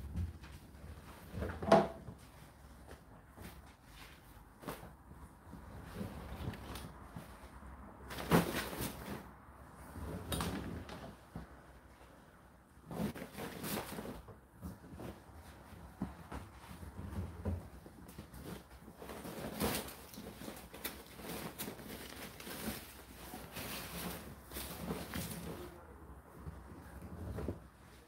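Dried towels being pulled by hand out of a tumble dryer drum: irregular rustling and dragging of fabric with a few light knocks.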